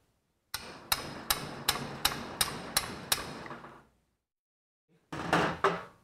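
A hammer tapping a steel punch about eight times in quick succession, nearly three strikes a second, driving the rubber out of a speargun band's plastic threaded insert with an oversized punch. Near the end comes a louder burst of handling noise with a few clicks.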